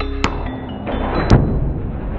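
A hammer striking a Sprinter van's rear door window over background music: a light hit, then a louder strike with a deep thud about a second in, which shatters the glass.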